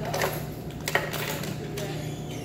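A few sharp clicks and taps, the loudest about a second in, over a steady low hum.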